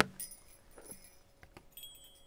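Faint metallic jingling with a few light clicks, then a thin high ringing tone near the end.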